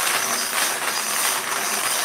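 Wire bingo cage being cranked round by its handle, the bingo balls tumbling and clattering against each other and the wire as it turns.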